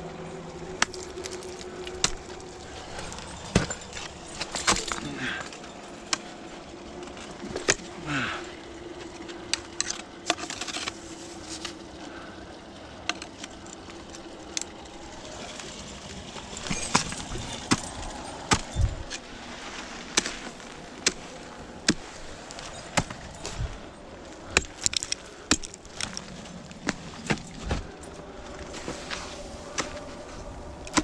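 Ice axe picks striking ice and snow in irregular, sharp strokes while lead climbing, with metal climbing hardware jangling between the strikes.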